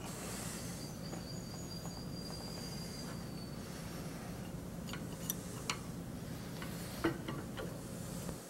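A keyway broach being set into its slotted guide bushing on an arbor press: several light metal clicks and clinks from about five seconds in, the sharpest near seven seconds, over a steady low hum.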